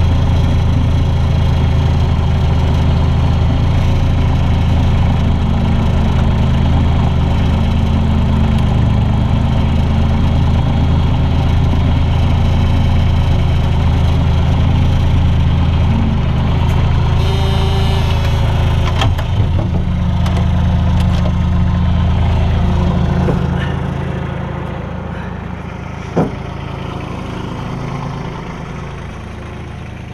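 Bobcat 443 skid-steer loader's engine running steadily, heard from the operator's cab. There is a short hiss about two-thirds of the way in. The engine sound drops lower over the last quarter, with one sharp knock near the end.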